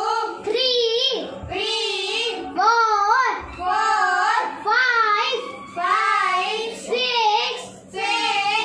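A young boy chanting number names in a singsong voice, about one short phrase a second.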